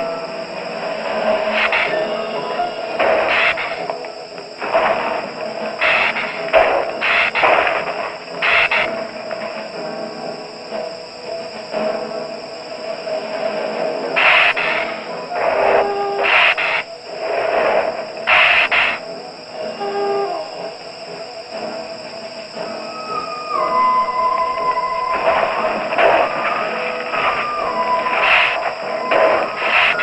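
Suspense film score music: a sustained background with repeated short, sharp bursts, then a wavering high melody line that steps up and down through the last several seconds.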